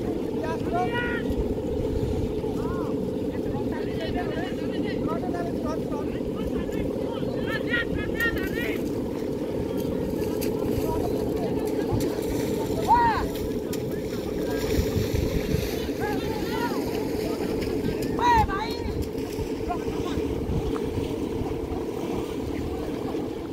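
A steady low drone, with people's voices calling out over it every few seconds, the loudest calls near the middle and about three-quarters of the way through.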